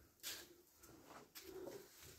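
Mostly quiet: a short soft swish about a quarter second in, a plastic hairbrush stroking through a toddler's hair, then a faint low cooing sound a little over a second in.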